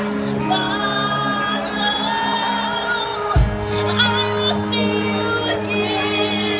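Live band music with a woman singing into a microphone over held chords, recorded from the audience with some crowd noise. About three and a half seconds in a low bass hit comes in, and a deep bass note then holds under the song.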